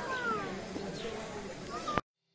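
Voices on a busy railway platform, with a high, drawn-out call falling in pitch over the first half-second. The sound cuts off suddenly at the end.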